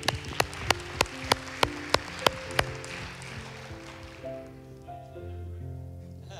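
Hand claps, about three a second, with softer applause beneath them, stopping about two and a half seconds in, over soft sustained music with slowly changing held chords.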